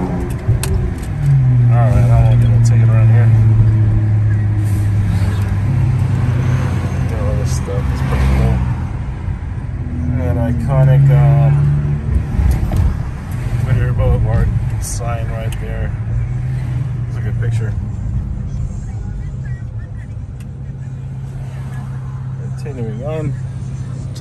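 Car engine heard from inside the cabin while driving in traffic, a steady low drone that swells under acceleration and eases off several times.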